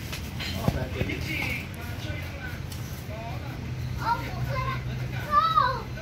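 Voices, including a child's, talking and calling out in two stretches, with a short knock about a second in and a steady low hum underneath.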